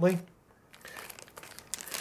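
Small clear plastic bag of mounting hardware crinkling faintly as it is picked up and handled, starting about a second in.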